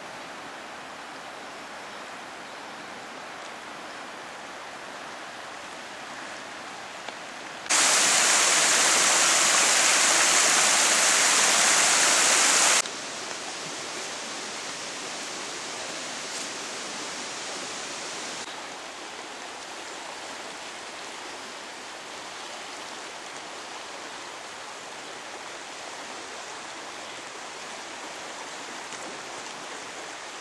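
The Dunajec river rushing over gravel rapids, a steady hiss. About a third of the way in it becomes much louder and brighter for about five seconds, switching on and off abruptly, then settles back to a steady rush.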